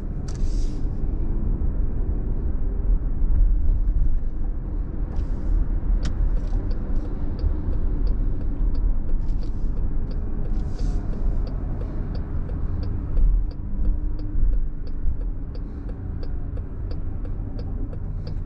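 Car interior road and engine noise while driving, a steady low rumble with a few brief swells of hiss. A regular light ticking, about two ticks a second, starts about six seconds in and keeps going.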